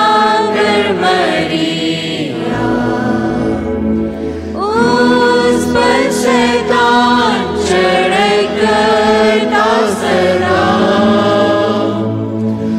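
A choir singing a devotional hymn over a steady, sustained instrumental backing.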